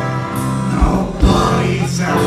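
Live rock band playing a song with singing, heard from within the audience, with two heavy low hits a little under a second in and just past a second.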